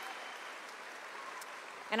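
Audience applauding, a steady wash of clapping that slowly fades.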